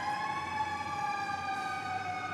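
An emergency vehicle siren holds a high wail that slowly falls in pitch.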